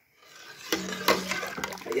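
A ladle stirring harira in a steel pot, starting just under a second in, with a few sharp clicks of metal against the pot over a steady low hum.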